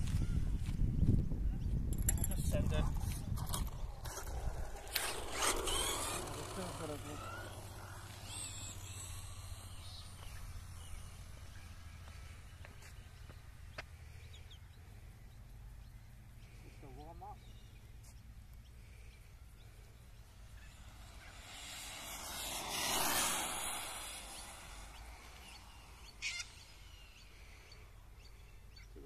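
Electric RC buggy with a brushless motor launching hard, its running sound fading as it speeds off into the distance. About 22 seconds in it comes back past, rising to a peak and fading again.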